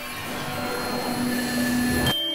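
Cartoon magic-spell sound effect from the wand: a whooshing hum with a few held tones that slowly swells louder, cut off sharply just after the end.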